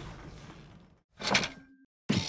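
A hissing sound effect fades away over the first second. Then comes one short, sharp mechanical sound effect, a quick slide-and-clack, about a second and a half in.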